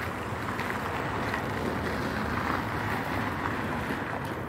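Steady outdoor ambience: an even, low rushing noise with no distinct events, made of wind on the phone's microphone and street traffic.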